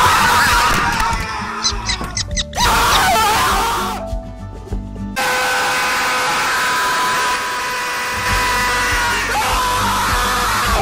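A man's loud screaming dubbed over the footage: a few strained, wavering bursts, then one long held note from about five seconds in until near the end, over background music.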